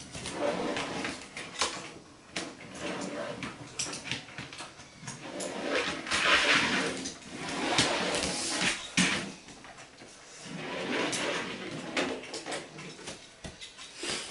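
A make-believe burnout for a toy drag car: a string of long hissing, scrubbing bursts that swell and fade, the loudest about six seconds in.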